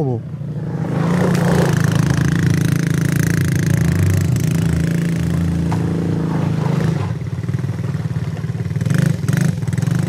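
Quad bike (ATV) engine running at a steady pitch as it drives away over dirt, easing off slightly about seven seconds in.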